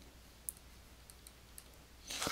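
Faint clicks of a stylus tapping on a tablet while handwriting: a handful of short ticks, the sharpest about half a second in, over a low steady hum.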